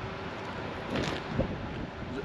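Steady outdoor background noise: a low hum with wind on the microphone, and a brief louder rustle about a second in.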